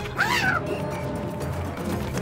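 Cartoon background music, with a short, high squealing cry that rises and falls about a quarter second in.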